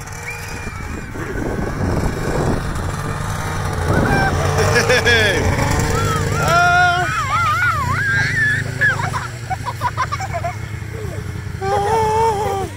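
Snowmobile engine running steadily as it approaches, getting louder about four seconds in. Children on the towed sled shriek and shout over the engine through the second half.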